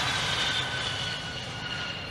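RQ-4 Global Hawk's Rolls-Royce F137 turbofan at takeoff power: a steady jet rush with high whining tones that dip slightly in pitch as the sound slowly fades, the aircraft moving away.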